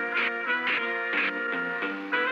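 Cartoon sound effect of a cigarette lighter's flint wheel scraping, struck about three times half a second apart without lighting, over plucked-string background music.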